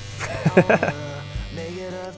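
Electric hair clippers buzzing steadily, held at a man's head for a haircut, with a burst of laughter in the first second and background music.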